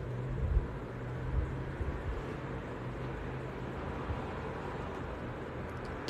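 Steady background hum with a low hiss, with a few faint low knocks in the first second.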